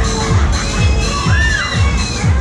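Riders screaming on a Fairmatt Miami fairground ride over loud dance music with a steady kick drum, about two beats a second. One scream rises and falls about a second and a half in.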